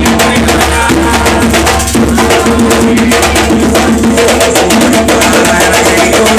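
Ceremonial drumming for the orixás: hand drums played in a fast, dense, steady rhythm, with rattles shaken along.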